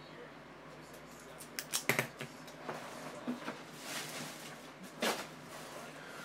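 Scattered light clicks, taps and rustles of hands handling small objects on a tabletop, starting about a second and a half in, with the sharpest clicks about 2 and 5 seconds in.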